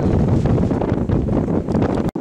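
Wind buffeting the microphone on an open ferry deck: a steady, fluttering rumble with no clear tone.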